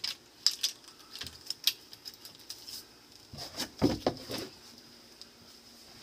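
Light clicks and clatter of a two-inch discharge hose being coupled onto a camlock fitting by hand, with scattered sharp clicks through the first three seconds and a short stretch of handling noise a little past halfway.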